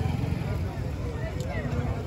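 Busy street-market ambience: a steady low rumble with indistinct background voices.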